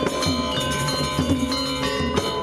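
Gamelan music: struck bronze metallophones and gongs ring in a dense layer of sustained tones, with repeated low drum strokes that slide in pitch.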